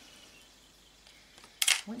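Near silence: faint room tone, with speech starting near the end.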